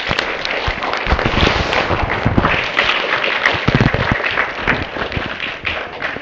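Audience applauding, a dense spatter of many hands clapping that builds quickly and fades out near the end.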